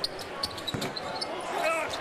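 Court sound of an NBA game in play: steady arena crowd noise with a basketball bouncing on the hardwood and short, high sneaker squeaks, and a brief voice near the end.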